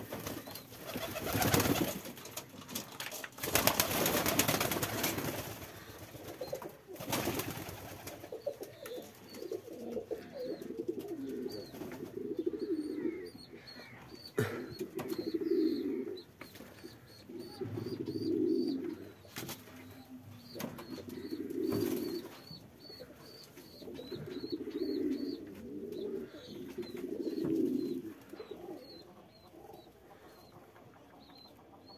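Domestic pigeons in a loft. Near the start there are a few bursts of wing flapping, then pigeons coo over and over, one low coo roughly every three seconds.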